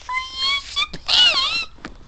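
A pet dog whining: a steady high-pitched whine, then a louder wavering cry about a second in.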